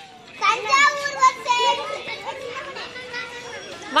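Small children's voices calling out and chattering while they play, several high voices overlapping, loudest in the first half and softer toward the end.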